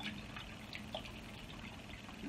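Teaspoon stirring gelatine powder into hot water in a jug: faint liquid swishing with a few light clinks of the spoon against the jug.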